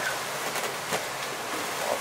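Steady rushing of wind and water around a catamaran sailing upwind at about 10 knots in 20-plus knots of wind, with a faint click about a second in.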